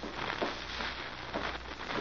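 Crackling, hissing surface noise with a steady low hum from an old radio transcription recording, heard in a short gap between lines of dialogue.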